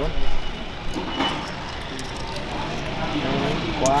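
A motorcycle engine idling steadily, with wind buffeting the microphone in a gust at the start and low voices nearby.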